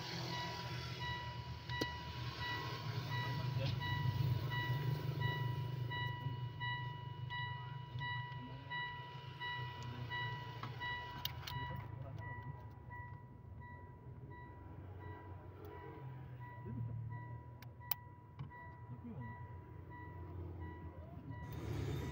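Low steady hum of a running vehicle, with a continuous high electronic tone and a faint rapid beeping over it that stop shortly before the end. There are a few light clicks of a plastic HVAC servo actuator being handled.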